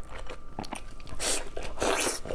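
Close-miked eating sounds as a large piece of sauce-glazed braised meat is bitten and chewed: small clicks at first, then two louder bursts in the second half.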